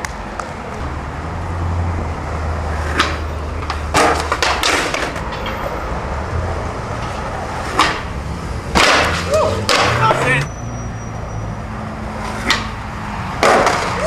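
Skateboard on concrete: urethane wheels rolling with a low steady rumble, then a run of sharp clacks and slams from the board. The loudest cluster comes just after eight seconds, as the rider lands from a jump down a big stair set, with shouts mixed in. More hard knocks come near the end as he falls to the ground.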